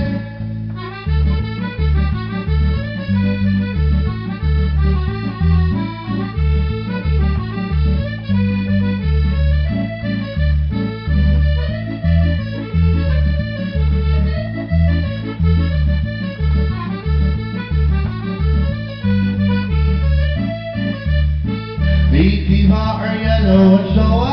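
Piano accordion playing an instrumental break of a folk song: a right-hand melody over a steady, regular left-hand bass-and-chord rhythm.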